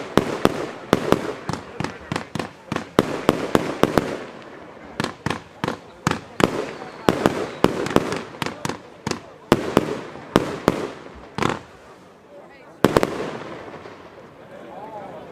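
Zena Nr. 1 consumer firework cake firing a long string of shots, each a sharp pop or bang as small coloured bursts break overhead. The shots come quickly for the first few seconds, then more spaced out, with a last loud one near the end.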